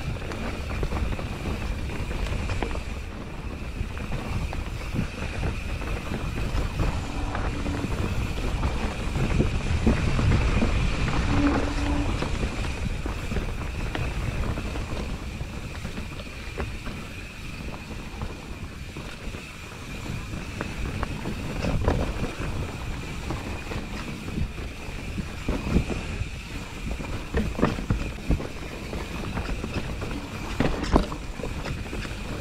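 Mountain bike rolling fast down a dirt forest singletrack: tyre noise on earth and leaf litter, wind on the microphone, and the rattle and knocks of the bike over roots and bumps, with sharper knocks in the last several seconds.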